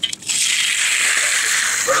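Steel hand trowel scraping steadily across a setting concrete floor, starting abruptly just after the beginning: hard-troweling (burnishing) the surface.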